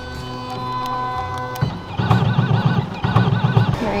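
Pet ID tag engraving kiosk at work: a steady motor whine, then about two seconds in two stretches of rapidly warbling whine, with a short break between them, as it engraves the tag.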